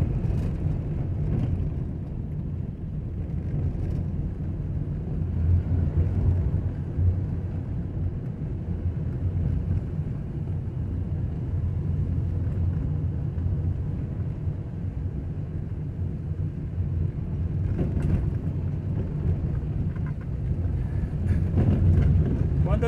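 Car driving along an unpaved dirt road, heard from inside the cabin: a steady low rumble of engine and tyres on the dirt.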